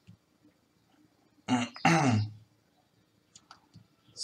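A man clearing his throat once, about a second and a half in, with a few faint clicks near the end.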